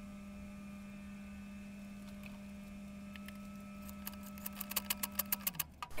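A steady faint hum, then, starting about four seconds in, a quick run of small metallic ratchet clicks as the KX250's cylinder head nuts are snugged down by hand tool, not torqued.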